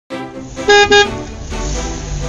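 Intro music with two short, loud horn toots, like a car horn going beep-beep, a little under a second in; the music then carries on.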